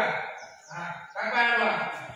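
A voice shouting in two loud, drawn-out calls, the second and longer one coming in the second half.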